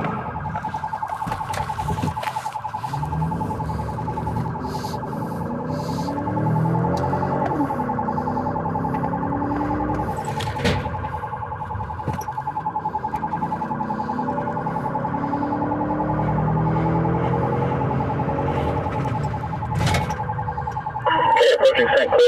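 Police car siren heard from inside the cruiser's cabin, a steady fast-warbling tone, over the car's engine revving up and easing off through the gears under hard driving.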